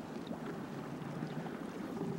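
Steady wind and water noise around a small fishing boat at sea, with no distinct event.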